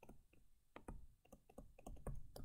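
Faint, irregular clicks and taps of a stylus on a tablet screen as words are handwritten, about a dozen small ticks in two seconds.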